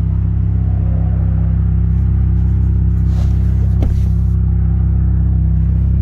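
Steady low hum of a Dodge Charger SXT's 3.6-litre V6 idling, heard from inside the cabin. A soft rustle and a brief click come about three to four seconds in.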